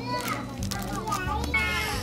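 Children's voices in a store, talking and calling out, very loud.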